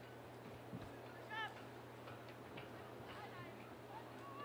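A single short, high-pitched shout from a player on the soccer field, heard from a distance about a second and a half in, over a steady low hum and faint ticks from play.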